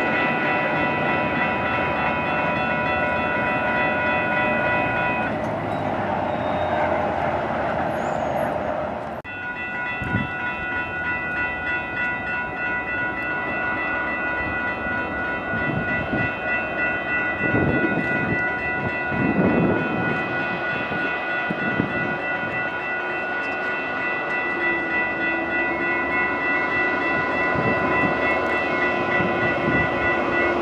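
Railroad grade-crossing warning bells ringing steadily over the rumble of a Metra commuter train on the tracks. About nine seconds in the sound cuts, and the ringing carries on as a hi-rail maintenance truck comes up the line.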